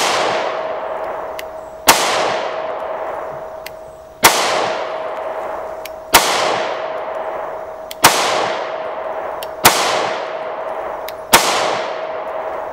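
Kimber Micro 9 pistol firing 9 mm rounds: seven single shots about two seconds apart, each followed by a long ringing decay.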